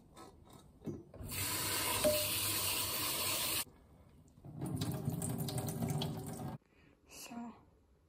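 Kitchen tap running into a rice cooker's inner pot holding brown rice, filling it to rinse the rice: a steady rush of water for about two seconds from a second in, then a second, fuller stretch of running water about halfway through.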